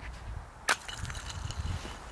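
A single sharp crack of frozen lake ice about two-thirds of a second in.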